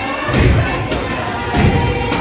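Dancers' feet stamping on a wooden floor in a Torres Strait Islander group dance: two heavy thumps about a second apart, with voices over them.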